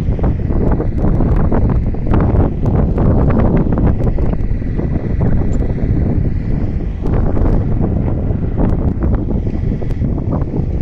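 Strong wind buffeting the phone's microphone: a loud, unbroken rumble with many short crackles, in dusty desert weather.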